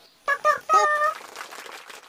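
Short end-card sound effect: a high-pitched, voice-like call in three quick parts, followed by a crackly shimmer that fades away.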